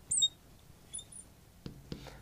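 A marker squeaking on a glass writing board as it is written with: short high squeaks at the start and again about a second in, then a couple of faint clicks near the end.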